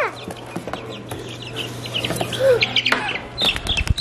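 Young chickens peeping and chirping, many short high calls in quick succession over a steady low hum, with a few knocks and rustles near the end as a black chick is handled.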